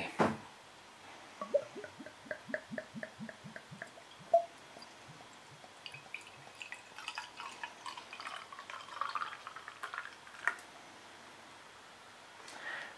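Beer poured from a bottle into a glass: a quick run of glugs from the bottle neck, about five a second, from about a second and a half in. After that comes a softer, steady pour into the glass, and a single sharp click near the end.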